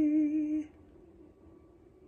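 A man's voice holding the final sung note of the song with a gentle vibrato, stopping about two-thirds of a second in, followed by near silence.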